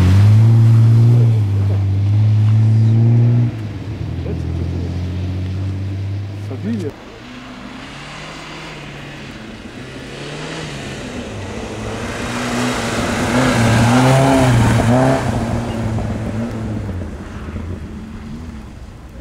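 Historic rally car engines: a Datsun Z coupé's straight-six held at high revs as it slides through a bend and pulls away, fading after about three and a half seconds. Then another rally car's engine, faint at first, grows louder as it approaches, its revs rising and dipping with the throttle, loudest about 13 to 15 seconds in, then fading.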